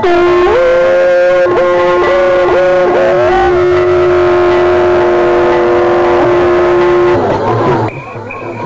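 Conch shells blown together: two long horn-like notes at different pitches, held for about seven seconds, then stopping. The higher note wavers and dips several times in the first three seconds before rising and holding steady.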